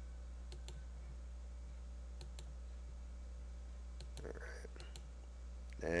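Faint computer-mouse clicks, several in quick pairs, over a steady low electrical hum.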